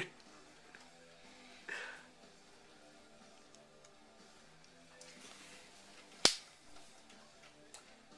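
Quiet room with faint background music, a soft rustle near two seconds, and a single sharp click about six seconds in, the loudest sound.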